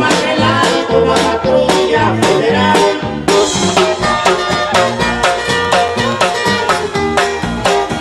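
A live Mexican música campirana band playing loudly, with strummed guitars in a steady, even rhythm over a walking bass line.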